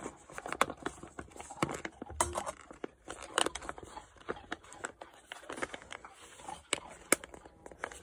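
Food pouch crinkling as a long-handled metal spoon stirs and scrapes thick rehydrated grits inside it: a string of irregular soft clicks, scrapes and rustles.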